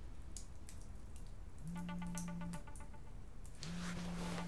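A mobile phone vibrating on a wooden coffee table: a low, rattly buzz about a second long, starting a couple of seconds in and coming again near the end. Faint crackles from a log fire between the buzzes.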